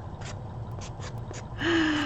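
A woman's brief wordless vocal sound, held on one steady pitch for under a second near the end, after a quiet stretch with a few faint ticks.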